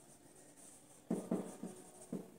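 Marker pen writing on a whiteboard: quiet at first, then a quick run of short squeaky strokes starting about a second in.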